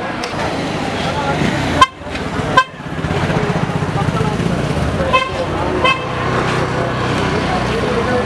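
Street crowd chatter with short vehicle horn beeps: two loud toots about two seconds in, then two fainter ones about five and six seconds in.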